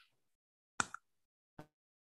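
Mostly silence, broken by a short double click a little under a second in and a fainter single tick about half a second later.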